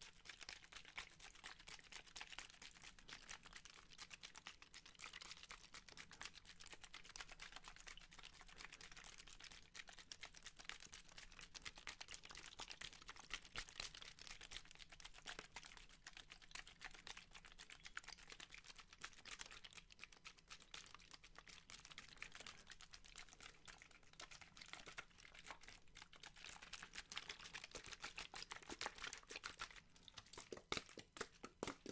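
Two thin plastic water bottles squeezed and handled close to a microphone: a faint, continuous run of small crinkles and taps from the plastic.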